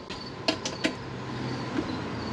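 A few light clicks and taps of small parts being handled on an Espar Airtronic D5 diesel heater as the glow plug's power wire is reconnected, over a low steady hum.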